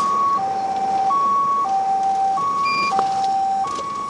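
Electronic alarm sounding a two-tone hi-lo pattern: a higher and a lower tone alternating steadily, each held about two-thirds of a second.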